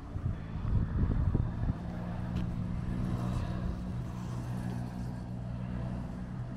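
Steady low hum of an idling vehicle engine, setting in about two seconds in after a short stretch of low rumble.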